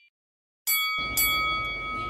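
Silence, then about two-thirds of a second in a bell-like chime strikes, and strikes again about half a second later, ringing on and slowly fading.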